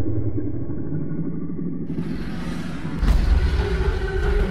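Deep, rumbling sound-design sting: a low rumble, muffled for the first two seconds and then opening up to full range, followed by a deep boom about three seconds in that carries on as a rumble.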